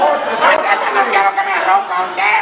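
Speech only: several voices talking over one another, loud and continuous.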